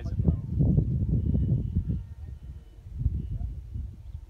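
Wind buffeting the microphone, an irregular low rumble that eases about halfway through.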